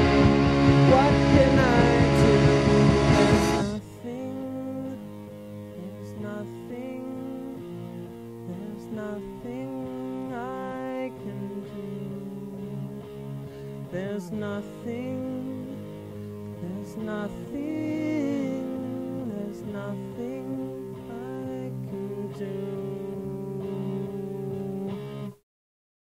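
Indie rock demo recording: a loud full-band section ends about four seconds in, giving way to a quieter instrumental passage of melodic guitar lines with bent notes. The music cuts off suddenly about a second before the end.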